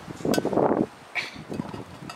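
A homemade concrete weight plate scraping over a concrete block as it is shifted: one rough scrape of under a second with a click in it, then a few quieter knocks and scuffs.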